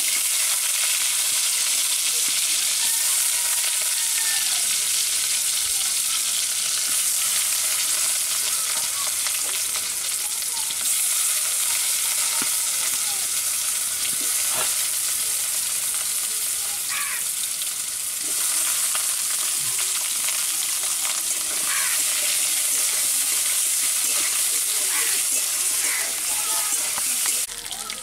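Cut potato and pointed gourd (potol) pieces frying in a metal bowl over a wood fire, giving a loud, steady sizzle, with a few faint clicks as more pieces are dropped in.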